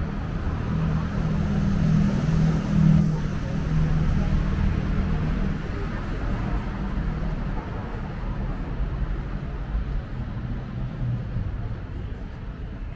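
City street traffic: a bus and cars driving past with a low engine rumble, loudest about two to three seconds in, then easing to a steadier background traffic hum.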